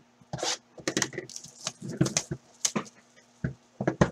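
Hands handling and tearing open a sealed trading-card hobby box: irregular crinkling and rustling of its wrapping and cardboard, with short sharp snaps.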